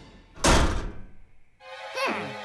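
Cartoon sound effect of a swinging door thudding: one loud thunk about half a second in that dies away. Music with falling glides comes in near the end.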